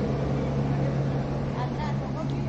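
Steady low hum of a running machine, unchanged throughout, with a few faint high chirps near the end.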